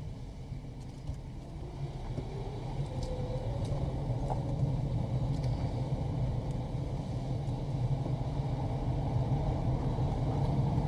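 Car driving slowly on a road: a steady low rumble of engine and tyres that grows gradually louder.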